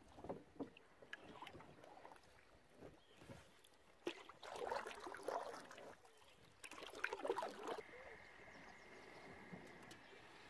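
Canoe paddling: a wooden paddle pulling through the river water, with two louder splashing, gurgling strokes in the second half.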